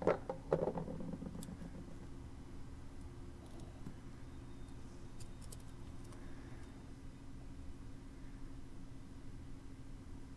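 Small metal parts of a turn-signal switch assembly handled by hand: a couple of knocks in the first second, then faint scattered clicks and clinks over a steady low hum.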